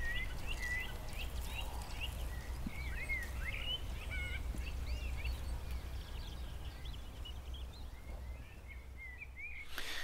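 Outdoor birdsong: many small birds chirping and whistling in short calls, fewer toward the end, over a steady low rumble of background ambience.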